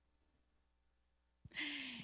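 Near silence, then about one and a half seconds in a woman's breathy, half-voiced sigh into a handheld microphone, lasting about half a second before she speaks again.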